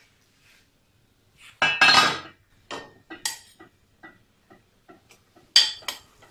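Metal pots and kitchen utensils being handled while cooking at a stove: a loud clatter about two seconds in, followed by several lighter clinks and knocks, with a sharp clink near the end.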